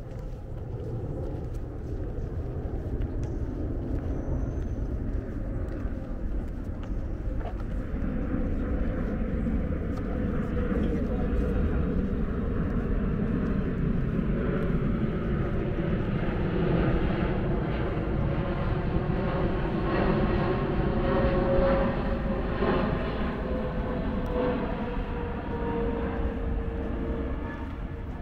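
Jet airliner passing low overhead. Its engine noise swells over the first several seconds, is loudest about two-thirds of the way through, and drops slightly in pitch near the end as it goes past.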